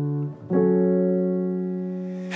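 Slow R&B beat opening on held keyboard chords: a chord fades out and a new one comes in about half a second in, then rings on, slowly fading.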